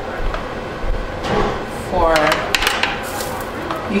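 A spoon scraping and clicking against a metal roasting pan as the pan juices are stirred into gravy, with a run of sharp clicks in the second half.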